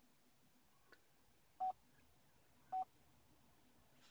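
Two short, single-pitched beeps about a second apart from the Chevy Bolt EV's infotainment touchscreen, its feedback tones as charging-screen options are tapped.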